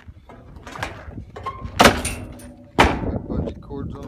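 The door of a homemade livestock hauler built from a water tote being shut: two loud bangs about a second apart, the first with a brief ringing after it.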